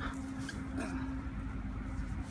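Low rumble of distant road traffic with a faint steady hum that fades out about a second in, and a few faint, soft knocks.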